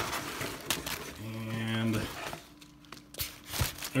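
Brown kraft paper wrapping crinkling and rustling as a heavy wrapped package is handled, with a short held hum from a man about a second in and a few light knocks near the end.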